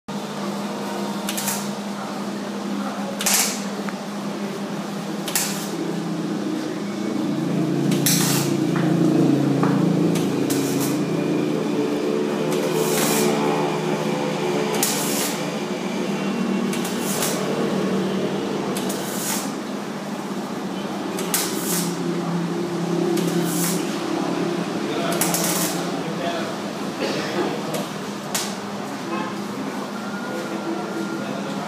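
Arc welding at a metal stand: the arc crackles in short bursts every second or two over a steady low hum.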